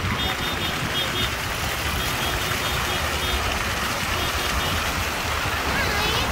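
Steady rushing and splashing of water from fountain jets and a water wall, an even noise that holds at one level.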